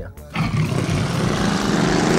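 Jaguar XK's V8 engine pulling hard as the car drives at speed toward and past the camera. The engine and road noise cut in suddenly about a third of a second in and stay loud.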